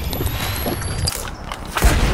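Two people shotgunning cans of energy drink, the fizzy liquid gushing out of the punctured cans as they gulp it down, with a sharp knock near the end.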